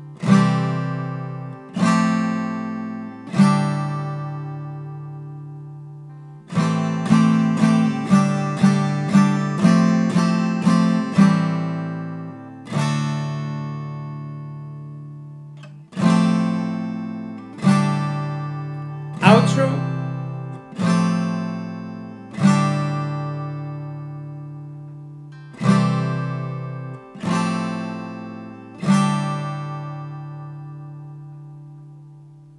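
Steel-string acoustic guitar, capoed at the fifth fret, strumming open chord shapes (G6, Cadd9, Dsus2, Em7). Most chords are struck once and left to ring for a second or more; a few seconds in comes a quicker run of about eight strums about half a second apart.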